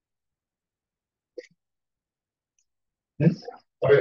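Silence for about three seconds, then two short, loud bursts of a person's voice near the end.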